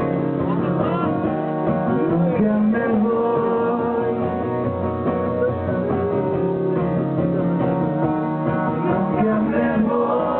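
Live band music: guitar playing with a voice singing the melody over it.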